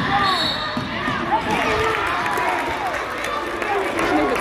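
Live indoor basketball play: a basketball bouncing on a hardwood gym floor as it is dribbled, with voices calling out over it. A short knock comes just past a second in.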